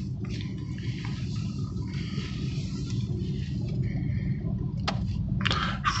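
Steady low rumble inside the cabin of a BMW i3 electric car rolling slowly on concrete: tyre and road noise, with a faint click near the end.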